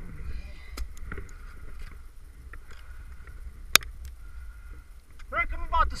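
Ice-climbing gear working soft wet ice: a few sharp knocks and ticks from ice axe picks and crampons striking the ice, the sharpest a little after halfway, over a low rumble of wind and camera handling. A voice starts near the end.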